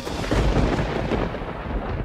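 A dramatic thunder-like rumble used as a sound effect. It starts suddenly, is deep and noisy, and fades away over about two seconds.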